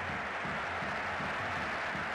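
Steady crowd noise of a large football stadium crowd, an even hum with no single event standing out.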